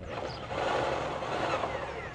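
Electric drill with a three-quarter-inch bit boring into a wooden dock board and piling, loudest from about half a second in. The motor's pitch falls near the end as it winds down.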